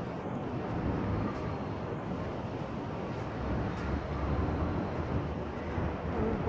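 Outdoor ambience: a steady low rumble of wind buffeting a phone microphone, with faint distant city noise beneath it.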